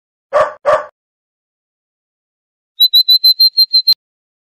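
Two short barks from a cartoon dog sound effect early on. Near the end comes a quick run of about eight high, even-pitched chirps, like small birds twittering.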